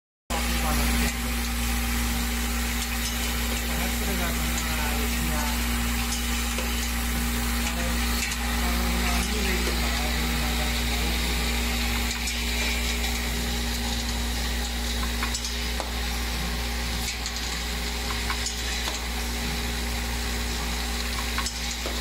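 Spoon-feeding packing machine running: its vibratory bowl feeder gives a steady low hum and a hiss-like rattle of plastic spoons, with a few sharp clicks along the way.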